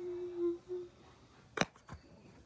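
A person humming one steady held note, which breaks briefly and ends about a second in. Near the end come two sharp clicks.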